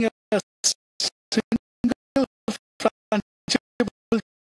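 Broken-up broadcast audio: very short fragments of sound, about three a second, each cut off abruptly into silence, giving a rapid stutter.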